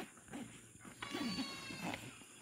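A farm animal bleating once: a single drawn-out call of about a second, starting about halfway through.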